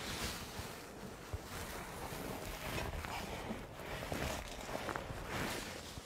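Rustling of clothing and bodies shifting on a padded treatment table while a patient is positioned face up with his arms crossed, with a few faint knocks.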